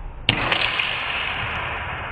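A single sharp crack about a quarter-second in, as a sword blade strikes an incoming padded arrow in mid-flight and knocks it aside. A steady hiss follows.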